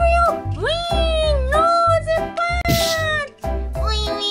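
Children's background music with a steady bass beat, and a high-pitched voice over it calling in long tones that slide up and down. A short burst of hiss comes about three quarters of the way in.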